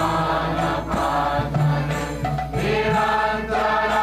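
Group kirtan: several voices chanting a devotional Hindu song together, held notes moving up and down over a steady low drone.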